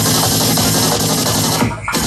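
Psytrance DJ mix played loud, with a driving electronic beat. Near the end the music briefly thins out and drops almost away for a moment, then comes back in.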